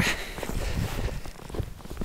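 Footsteps walking through snow, an irregular patter of soft steps over low, rumbling handling noise.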